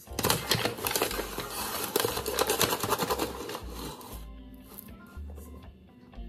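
Paper flour bag crinkling and rustling as it is opened and handled, busiest for the first four seconds and dying down after. Music plays underneath.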